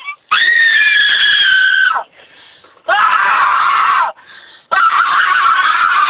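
Three long, loud, high-pitched yells at full volume, each held for one to two seconds with short breaths between, the pitch sagging slightly at the end of each.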